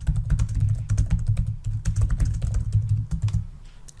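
Fast typing on a computer keyboard: a quick, uneven run of key clicks that dies away about half a second before the end.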